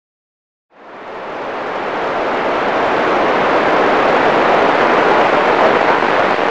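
Loud, steady hiss of static from a ham radio receiver, fading in just under a second in and swelling over the next couple of seconds.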